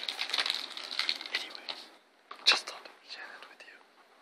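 A person whispering for about two seconds, then a single sharp click about halfway through.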